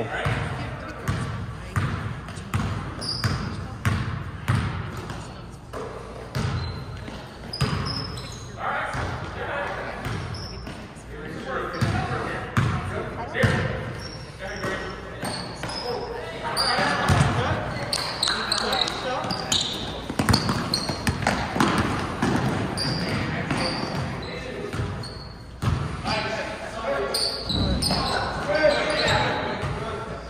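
Basketballs bouncing on a gym floor in quick repeated strikes during a game, with sneakers squeaking and voices calling out, all echoing in a large hall.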